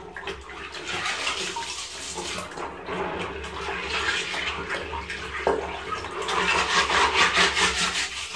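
Water sloshing and splashing in a basin as a mesh bag of Seachem Matrix porous filter media is swished and rinsed by hand in clean aquarium water. The swishing turns quicker and rhythmic in the last couple of seconds.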